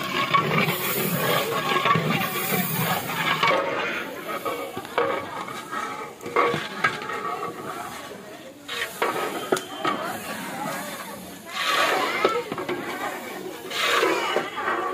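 Sliced onions frying and sizzling in a large aluminium pot while a long metal ladle stirs and scrapes through them, with people talking.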